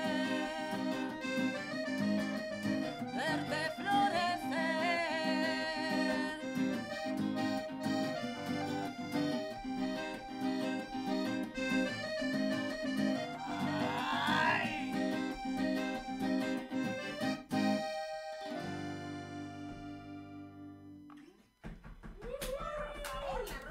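Piano accordion and guitar playing a cumbia song live. Near the end they land on a held chord that fades away.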